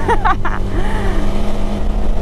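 KTM 390 Adventure's single-cylinder engine running steadily under way on a loose gravel road, with a deep, even rumble throughout.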